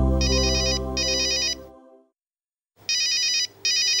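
Mobile phone ringing with an incoming call: an electronic trilling ringtone in two pairs of short bursts, with a gap of silence between the pairs. Low background music fades out under the first pair.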